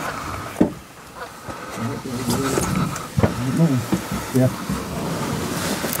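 Men talking quietly in low voices, with a single sharp click about half a second in.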